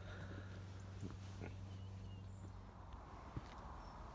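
Quiet outdoor ambience: a low steady hum that stops about two-thirds of the way through, with faint scattered clicks and a few short high chirps.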